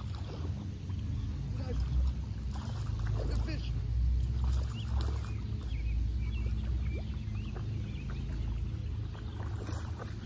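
A steady low drone of a motor running, louder through the middle, with faint bird chirps over it.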